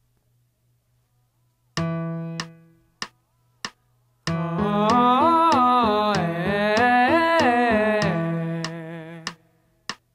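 A vocal warm-up exercise track. A held accompaniment chord sounds, then clicks keep time about every 0.6 seconds, and a voice hums or sings an arpeggio pattern that steps up and back down over sustained low accompaniment notes, with a slight vibrato at the end of the phrase.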